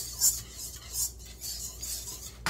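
Wire whisk stirring a cream sauce in a metal frying pan, its wires scraping and clinking against the pan in quick repeated strokes, about two or three a second.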